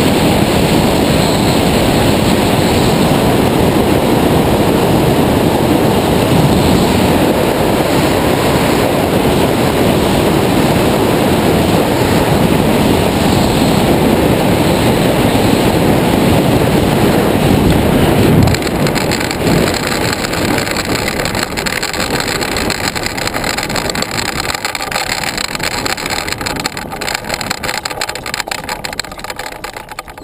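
Airflow rushing over the wing-mounted camera's microphone as a tandem hang glider glides in low to land. About eighteen seconds in, the rush drops as it touches down, then fades with knocks and rattles from the base-bar wheels rolling on grass as it slows to a stop.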